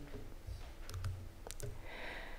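A few faint, sharp clicks in a quiet pause, over a low room hum.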